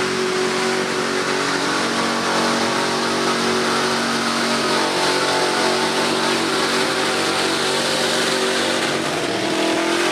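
Old pickup truck's engine running hard at high revs as it pushes through a mud bog pit, loud and steady, the pitch climbing slightly near the end.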